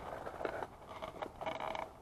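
Clothing and camera handling noise as a person crouches: a few short rustles and scrapes, and a brief creak about one and a half seconds in.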